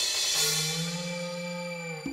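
Background film music: a cymbal swell near the start, then a held low note under a sustained tone that rises slightly.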